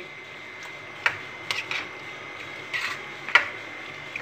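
A spoon stirring pasta in thick white sauce in a steel pan: wet squelching with a few short scrapes and knocks of the spoon against the pan, the sharpest about three seconds in.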